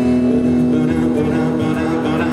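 Live pop ballad played by a band led by an acoustic guitar, with one long low note held steady.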